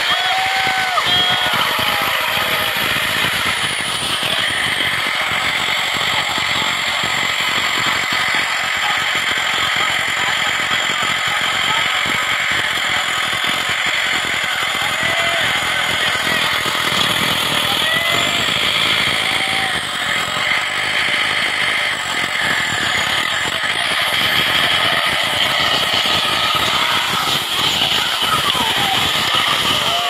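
Off-road buggy's engine running hard and steadily for the whole stretch while the vehicle pulls against a recovery strap anchored to a tyre in the mud.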